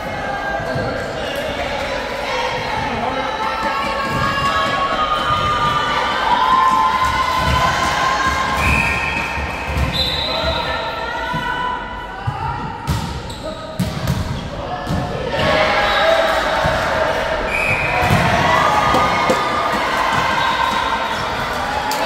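Volleyball rally in an echoing sports hall: the ball knocked about by hands and hitting the floor, players calling out, and a couple of short high squeaks.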